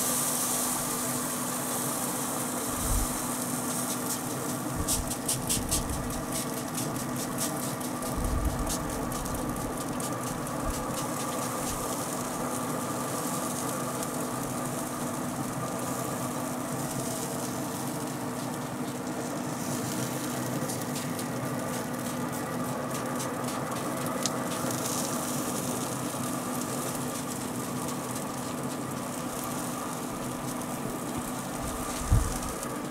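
A Traeger pellet grill running with a steady hum while a trigger spray bottle squirts apple juice over the ribs in several runs of quick squirts.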